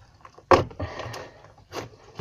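A clear plastic bag of slime being handled and shaken. A sudden sharp crinkle or slap comes about half a second in, then plastic rustling, and another short knock near the end.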